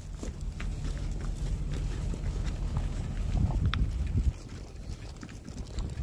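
Wind buffeting the microphone in a low rumble, with footsteps on gravel as a man walks; the rumble drops away suddenly about four seconds in.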